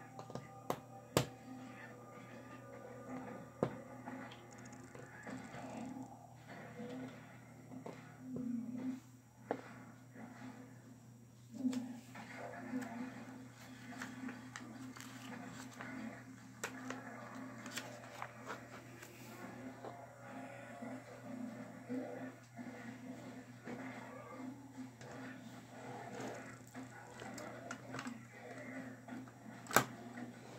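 Plastic LEGO bricks clicking and tapping as pieces are handled and pressed together, a few sharp clicks standing out, over a steady hum with faint background speech and music.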